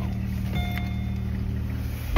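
Car engine idling, heard from inside the cabin as a steady low hum, with a thin steady high tone joining about half a second in.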